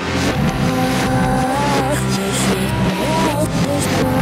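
A pop-rock band recording played in reverse: backwards vocal lines glide and swell over backwards guitars, bass and drums.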